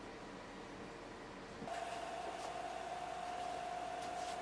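Quiet workshop room tone; about one and a half seconds in, a wood lathe's motor is heard running with a steady, even whine.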